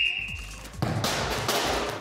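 A sports whistle blown in one steady high blast that stops just over half a second in. About a second in comes a loud, noisy crash lasting about a second as the oil-filled radiator is knocked over.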